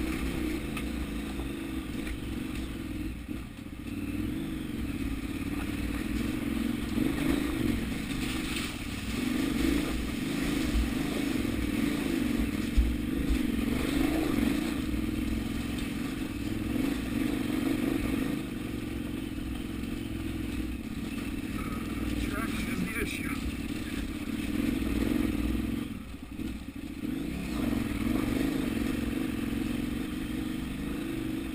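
KTM 990 Adventure's V-twin engine running at low speed, the throttle opening and closing as the bike climbs a loose rocky trail, with stones clattering under the tyres and one sharp knock near the middle.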